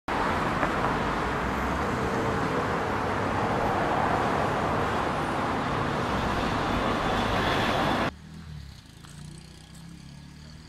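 Road and traffic noise heard from inside a moving car's cabin: a steady, loud rushing that cuts off abruptly about eight seconds in, leaving a much quieter background.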